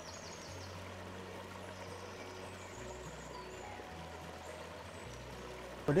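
Soft background music of low sustained notes that change every second or two, over the steady rush of a shallow stream.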